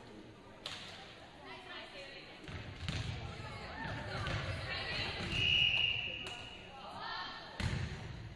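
Volleyball play in a school gym: players calling out and one steady referee's whistle blast of under a second a little past the middle, with sharp ball hits echoing in the hall, two of them near the end.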